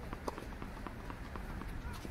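Footsteps of tennis players walking on an outdoor artificial-grass court, a series of soft, irregular steps over a low wind rumble on the microphone.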